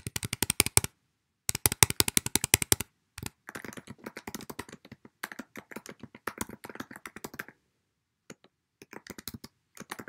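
Typing on a computer keyboard. Two loud runs of rapid, evenly spaced keystrokes come in the first three seconds, as text is deleted and retyped. Softer, uneven typing follows, then there is a pause of about a second and a little more typing near the end.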